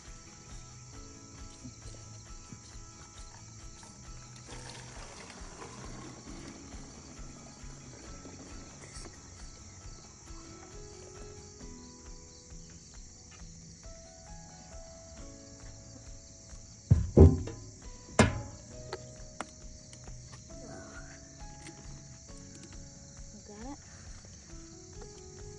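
Insects calling steadily in a continuous high drone, under soft instrumental background music. Two loud thumps land close together about seventeen and eighteen seconds in.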